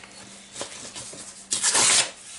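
Paper pages of a handmade journal rustling as a page is turned, with a brief loud swish about a second and a half in.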